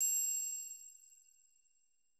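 A single bright, bell-like chime, struck once right as the logo appears, ringing with several high tones and fading out over about a second: a logo sound effect.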